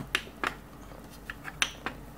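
Short, sharp clicks of the plastic front-panel buttons on a Kurzweil K2600 synthesizer being pressed, about four or five spread unevenly over two seconds.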